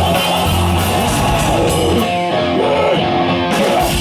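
Live rock band playing loud, with electric guitars, bass and drum kit. Just past the middle the cymbals drop away for about a second while the guitar notes bend.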